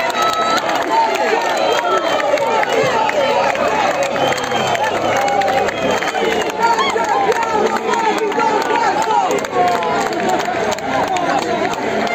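Football supporters in the stands, many voices shouting and cheering at once, celebrating a goal.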